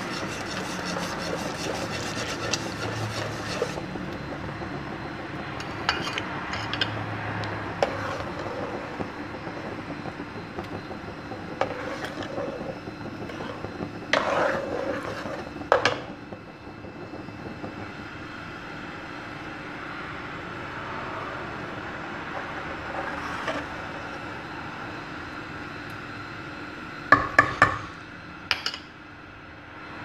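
Metal ladle stirring thick, milky kheer (rice pudding) in a metal pot on the stove, scraping along the pot with a few sharp clinks and knocks against it, the loudest around the middle and near the end. A steady low hiss runs under it.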